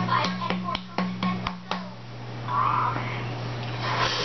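Beer glugging out of a glass bottle into a pint glass, in even glugs about four a second for roughly the first two seconds, then stopping. A steady low hum runs underneath.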